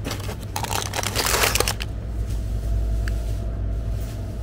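Plastic ice cream wrappers crinkling as a hand rummages through packets in a chest freezer, for about a second and a half, then dying away over a steady low hum.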